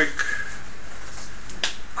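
A single sharp click about a second and a half in, over the steady hum of a small room.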